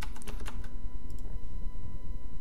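Computer keyboard keys tapped several times in quick succession at the start, with a couple more taps about a second in, over a steady low hum.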